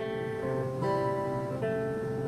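An acoustic string instrument strumming chords with long ringing notes, changing chord twice.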